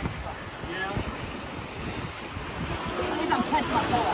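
Wind buffeting the microphone over the wash of ocean surf breaking on jetty rocks, with brief snatches of voices just before a second in and again near the end.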